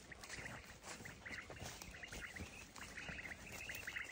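Faint, distant bird chirps repeating irregularly over quiet open-field ambience, with a few light rustles.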